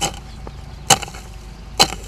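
A long-handled hoe chopping into soil: three sharp strikes, about a second apart.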